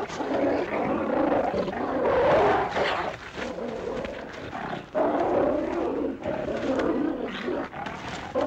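A large hound snarling and growling without a break as it attacks a man, the sound swelling and dipping irregularly.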